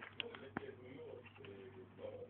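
Quiet handling of a cardboard milk carton and its plastic cap: two sharp clicks in the first half second, over a faint low hum that comes and goes in short stretches.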